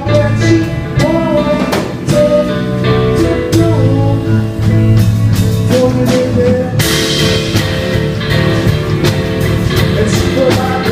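Live band playing: drum kit, bass guitar, acoustic guitar and keyboards, with a voice singing over them. The cymbals get louder and brighter about seven seconds in.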